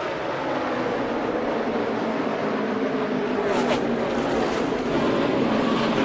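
Pack of NASCAR Cup Series stock cars with V8 engines running flat out in a tight draft, a steady, dense engine drone that grows slightly louder. Two short sharp noises cut in about three and a half seconds in, during the multi-car wreck.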